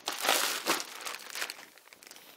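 Cellophane bags of plastic toy soldiers crinkling and rustling as a hand digs through them in a cardboard box, heaviest in the first second, then lighter crinkles.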